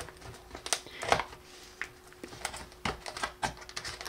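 Fingers picking and prying at the flap of a small cardboard retail box: a scatter of irregular light clicks and scrapes as it is worked open.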